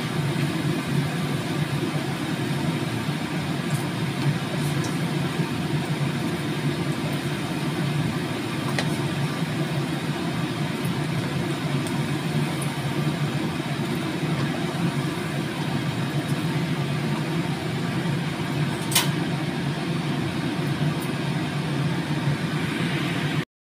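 Potato perkedel (fritters) sizzling in hot oil in a frying pan over a steady low hum, with a few light clicks and one sharp click near the end.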